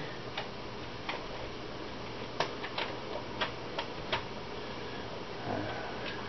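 A handful of faint, sharp clicks and taps at uneven spacing from a glass beer bottle being turned in the hands, over a steady room hiss.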